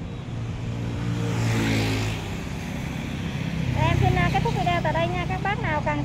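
A road vehicle passing by, its engine note falling in pitch as it goes past in the first two seconds, over a steady low hum. A man's voice comes in for the last couple of seconds.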